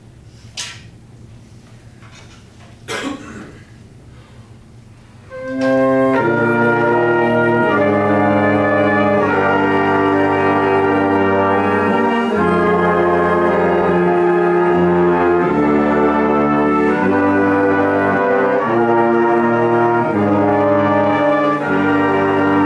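A small brass ensemble comes in with a short pickup note about five seconds in, then plays sustained chords in four parts that change every second or two. Before the entry there are two short knocks.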